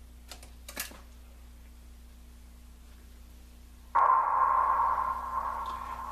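A couple of light clicks from the Kenwood TS-940S transceiver's front-panel power switch. About four seconds in, its speaker comes on suddenly with loud, steady receiver static carrying a steady whistle, as the radio powers up from its new supply.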